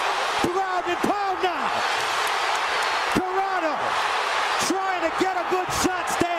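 Fight broadcast audio: raised voices yelling over an arena crowd's noise, with repeated sharp slaps of punches landing during ground-and-pound. The crowd swells loudest about two seconds in.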